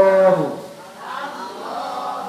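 Drawn-out chanted recitation of Arabic words such as 'Allahum', in practice of Quranic pronunciation. A long held vowel ends about half a second in, followed by a softer, blurred stretch of several voices repeating together.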